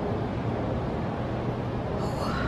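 Steady background noise, an even hiss over a low hum, with no distinct events: indoor room noise.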